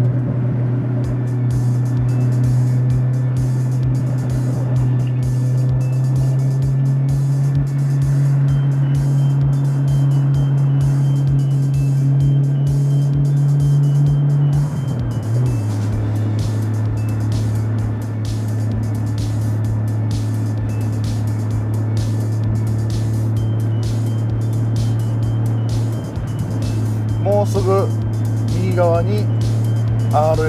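Nissan Skyline GT-R (R33)'s RB26DETT twin-turbo straight-six running at low revs under way, a steady drone whose pitch climbs slowly, drops at a gear change about 15 seconds in, then holds steady. Wind noise buffets the microphone.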